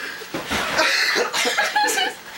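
Stifled laughter: a string of short, breathy, cough-like bursts, starting about a third of a second in.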